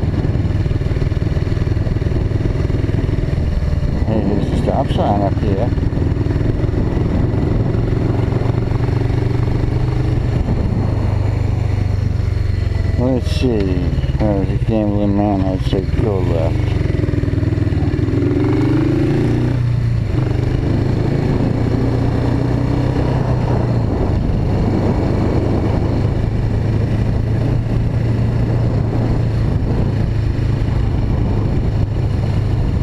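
Suzuki GS500E's air-cooled parallel-twin engine running under way, a steady low drone. In the middle its note rises and falls several times as the bike accelerates and eases off.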